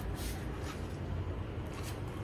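Faint rustle of paperback book pages being leafed through by hand, over a low steady room hum.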